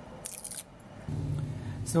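Brief rustling as a spool of solder wire is handled and unwrapped, followed about a second in by a steady low hum.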